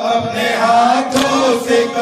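Male voices chanting an Urdu nauha, a Muharram lament, in drawn-out melodic lines, with a sharp slap a little past the middle.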